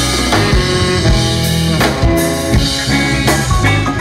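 Live rock band playing an instrumental passage: electric guitars over a drum kit, loud and steady, with no singing.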